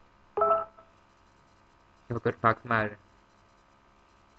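Two short bursts of a person's speaking voice over an online video call, about half a second in and again about two seconds in, with silence between.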